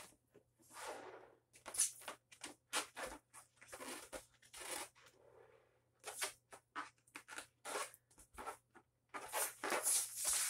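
A 12-inch latex heart balloon being blown up by mouth: repeated breaths of air pushed into it, with short crackles and rustles of the rubber being handled between breaths.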